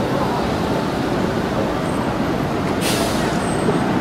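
Steady rumble of city road traffic passing, with a short hiss about three seconds in.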